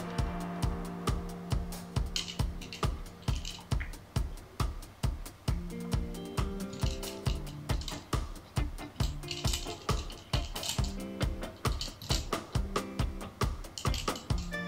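Background music with a steady electronic beat and sustained synth notes.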